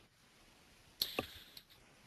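A quiet pause holding only a brief faint hiss and a single sharp click about a second in.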